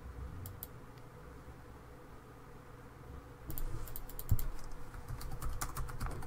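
Typing on a computer keyboard: a quick run of keystrokes starting about three and a half seconds in, after a couple of faint clicks near the start.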